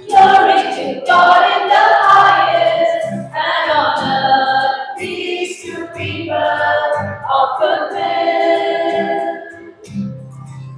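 Church choir of women's voices singing a hymn during Mass, in phrases of a second or two with short breaths between.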